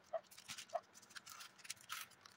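Wooden skewer squeaking twice as it is pushed into a block of styrofoam, among light clicks and rustles of handling.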